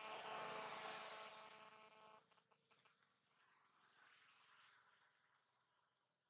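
An insect buzzing steadily for about two seconds, then cutting off suddenly, leaving faint outdoor background.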